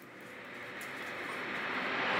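A swell of noise with no clear pitch, rising steadily in loudness like a whoosh, starting faint and growing louder.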